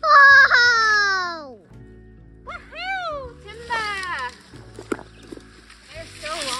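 A woman's loud, high strained cry, falling in pitch, as she hauls a long cut sapling through brush. A few shorter rising-and-falling exclamations follow, then rustling brush and a few sharp snaps, all over background music.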